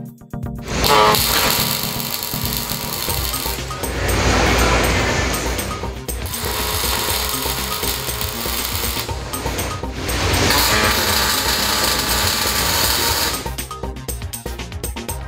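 Robotic MIG (gas metal arc) welding arc crackling and buzzing as the welding robot lays beads. It starts about a second in, breaks off briefly twice as the arc stops and restarts, and stops near the end, with background music underneath.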